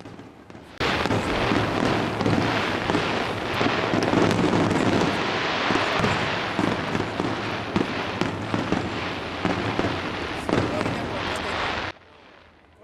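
Aerial fireworks bursting overhead in a dense, continuous crackle of many overlapping small pops, with sharper bangs scattered through it. It starts suddenly about a second in and cuts off abruptly near the end.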